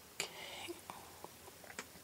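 Faint whispering or breath close to the microphone, with a sharp click just after the start and several small clicks after it.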